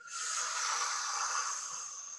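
A person breathing in deeply and audibly: one long, steady in-breath with a hissing sound, held as the arms are raised in a breathing exercise.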